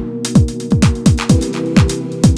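House music played live on an Elektron Digitakt drum machine and Novation Peak synthesizer: a four-on-the-floor kick drum at about two beats a second with hi-hats between the kicks, over a held synth chord.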